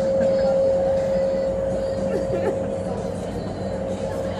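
Indoor skydiving wind tunnel running: a steady rush of air with a constant hum tone from the tunnel's fans.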